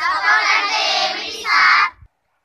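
A group of children's voices calling out together in unison: one long phrase, then a shorter, louder one.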